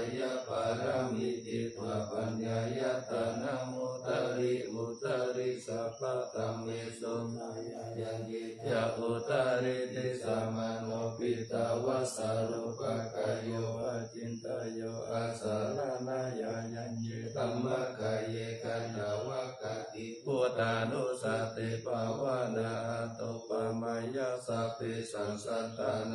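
Thai Buddhist morning chant (tham wat chao) recited in Pali by many voices together, a continuous, steady, low chant with no pauses.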